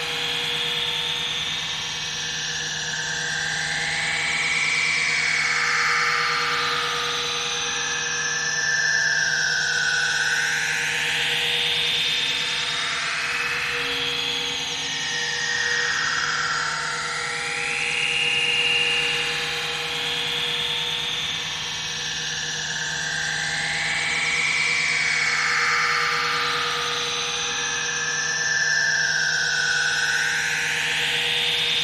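Live-coded electronic music from TidalCycles: a noisy, textured drone whose bright bands glide up and down in pitch, repeating every few seconds, over a steady low tone.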